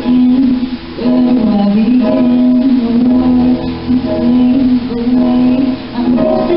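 A woman singing a slow ballad into a microphone with electronic keyboard accompaniment, holding long notes in phrases with short breaks between them.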